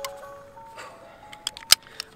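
Sustained music notes fading out, then a few sharp plastic clicks near the end, the loudest a single snap, as an action camera is clipped into a chest-harness mount.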